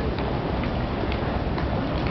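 Footsteps clicking on a paved pedestrian walkway, about two steps a second, over a steady low rumble of city noise.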